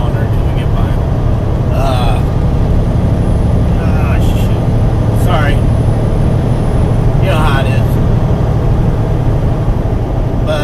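Steady low rumble of a semi truck's engine and road noise heard inside the cab while driving, with a few short voice sounds over it.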